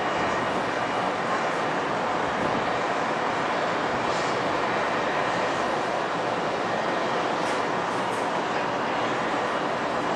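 Steady city background roar, a constant din of traffic, with no distinct events standing out.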